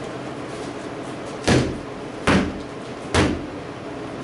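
Three loud, sharp thuds, a little under a second apart, each with a short ringing tail.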